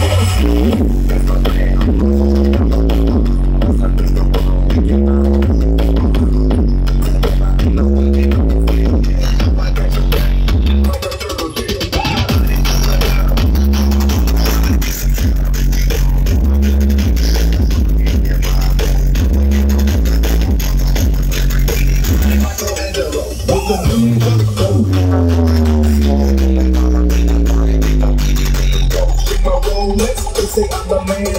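Loud electronic dance music with a heavy, stepping bass line, played through a parade truck's stacked sound-system speakers. There is a short dip about eleven seconds in, and a run of falling bass sweeps near the end.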